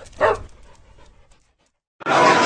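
A single short dog bark about a quarter second in, falling in pitch, then fading away.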